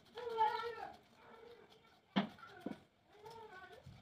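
Two drawn-out, meow-like animal calls, the first about a second long and the second shorter near the end. Between them, two sharp snips of scissors cutting through paper.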